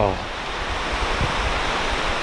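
Steady rushing of a mountain stream, an even hiss of running water, with dull low thumps underneath.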